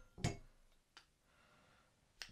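A short soft knock as a metal conduit pole is set down on a table, dying away quickly, then one faint click about a second in; otherwise near silence.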